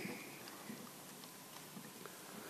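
Faint hall room tone: a steady hiss, with a faint high tone that stops about half a second in and a few soft clicks.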